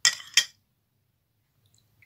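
A metal spoon clinks twice against a bowl of egg yolks and milk.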